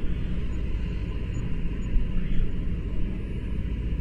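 Steady, noisy low rumble under a space-mission radio broadcast, muffled with no highs, with a faint voice about two seconds in.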